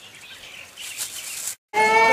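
Faint outdoor ambience with some birds. Near the end the sound cuts out briefly, then a loud, high wail with a slowly falling pitch begins.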